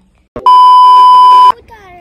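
A loud, steady electronic beep at a single pitch, starting about half a second in and lasting about a second before cutting off sharply: an edited-in bleep tone at a cut between scenes.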